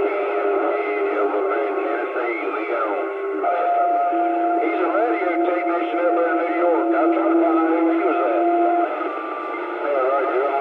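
CB radio receiving distant stations on channel 28: several voices overlap and garble through the set's narrow, tinny passband, under a steady whistling tone. About three and a half seconds in the whistle changes to a higher and a lower tone held together, which stop near the end as the signal weakens.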